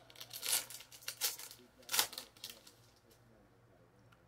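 A trading-card pack wrapper being torn open by hand: three crinkly rips about two thirds of a second apart, with a few smaller crackles after.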